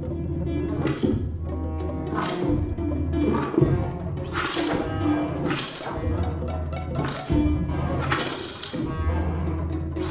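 Contemporary chamber ensemble with live electronics playing: a low sustained drone that cuts in and out in blocks of a second or two, under repeated noisy swells about once a second.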